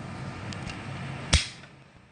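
A steady low background hum, then one sharp knock about a second and a half in, as the phone recording the stream is handled. The background sound drops away right after the knock.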